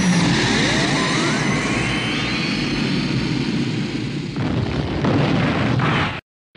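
Loud rushing, rumbling sound effect with a thin whistle rising in pitch over the first two seconds or so, like a jet or a blast. It cuts off abruptly at the end.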